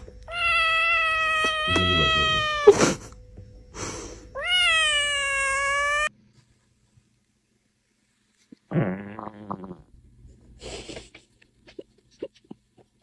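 A kitten meowing: two long, drawn-out meows, the first falling slightly in pitch, the second rising at its start and then held before stopping abruptly about six seconds in. After a silent pause, a brief lower call follows.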